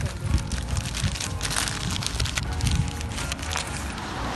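Brown paper wrapping crinkling and crackling in irregular bursts as a pie is unwrapped from it.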